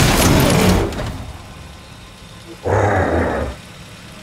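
A van's wheel skidding to a halt: a loud rushing noise fades over the first second or two, and a second, shorter burst of noise follows near three seconds in.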